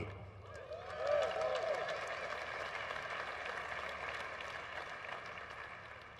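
Audience applause with a few cheers and a whoop about a second in, heard faintly through a live-stream feed, tapering off over several seconds.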